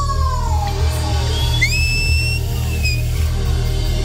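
Amplified live band music with steady bass and drums. A held sung note falls away at the start, then a high, whistle-like tone comes in about halfway and is held for over a second, sliding slightly downward.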